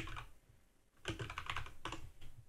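Typing on a computer keyboard: after a short pause, a quick run of keystroke clicks over the second half.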